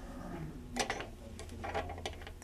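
Faint scattered ticks and light rustling of fingers handling thread and feather fibers at a fly-tying vise, over a low steady hum.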